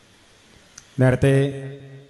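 A man speaking into a microphone: a pause, then about a second in a loud, drawn-out syllable held on one pitch in an orator's intoned delivery, fading away.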